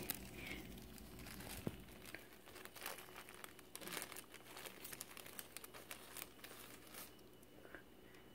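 Faint crinkling and scattered small crackles from the container of feeder crickets being handled.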